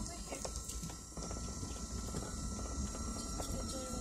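Vehicle cabin noise while driving on a rough dirt road: a steady low rumble with frequent short knocks and rattles as the vehicle bumps along.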